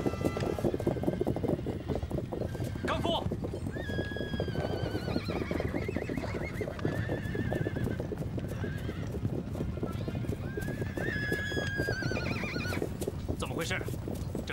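A large body of horses galloping, a dense, continuous drumming of hooves. Horses whinny over it, once about four seconds in and again around eleven seconds, each a wavering, falling call.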